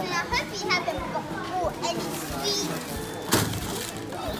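Children's voices, with high squeals and chatter that no words can be made out of, over the general hubbub of a busy supermarket checkout; a short noisy burst comes about three seconds in.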